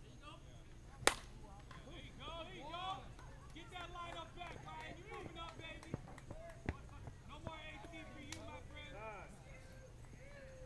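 Softball bat hitting the ball with a single sharp crack about a second in, followed by several seconds of players shouting and calling out across the field.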